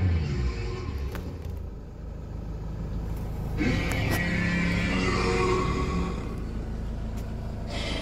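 2008 Hyundai Grand Starex van's engine dropping back from a rev of about 3,000 rpm to idle over the first couple of seconds, then idling steadily. A second steady, higher noise joins about halfway through and stops just before the end.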